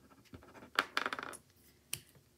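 Fine marker-tip pen writing on a paper sticky note: a quick run of scratchy strokes about a second in, then a single sharp click near the end.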